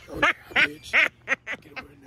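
A person laughing in a run of short, high-pitched bursts, about seven in two seconds.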